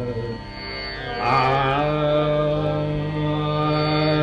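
Male dhrupad vocalist singing Raga Adana over a steady tanpura drone: about a second in he glides into a new note with a wavering ornament, then holds long, steady notes.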